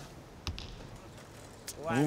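Compound bow shot: a sharp snap about half a second in, then a fainter click near the end.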